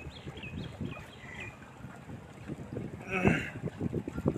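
Wind gusting on the phone's microphone, an uneven low rumble, in a pause in the group singing, with a few faint high chirps in the first second or so and a brief louder burst about three seconds in.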